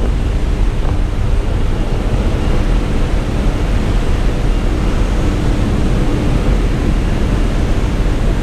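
Steady loud rush of wind through the open door of a small jump plane in flight, with the plane's engine and propeller droning underneath.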